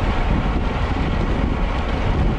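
Steady wind noise on a bike-mounted camera's microphone at about 29 mph, with road bike tyres running on asphalt underneath.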